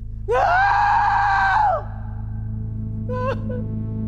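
A woman's anguished scream: one long, loud, held cry of about a second and a half, then a short broken cry about three seconds in, over a steady low music drone.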